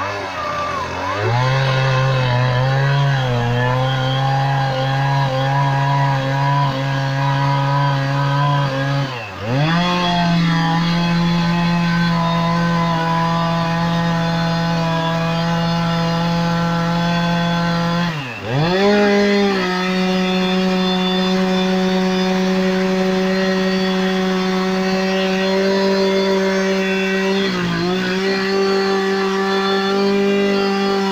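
Two-stroke chainsaw running at high speed as it cuts into a log, loud and steady. Three times the engine note dips sharply and climbs back up.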